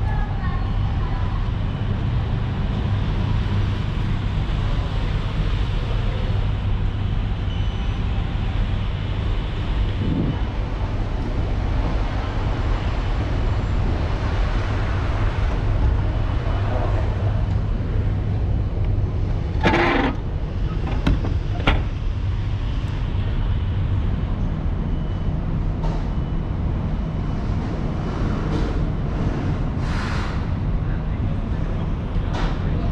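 Steady low rumble of road traffic. About twenty seconds in, three sharp knocks come close together as a drink can drops out of a vending machine into its pickup bin.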